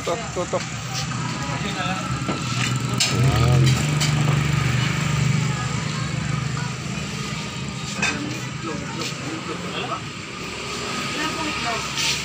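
Scattered voices of several people talking in the background, with a few clicks. A loud low rumble comes in about three seconds in and fades out by about eight seconds.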